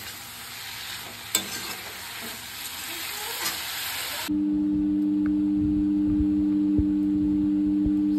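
Leafy greens and potato pieces sizzling as they are stir-fried in an aluminium wok with a metal ladle, with one sharp knock of the ladle about a second and a half in. A little past halfway the frying cuts off abruptly and a steady low two-note hum takes over.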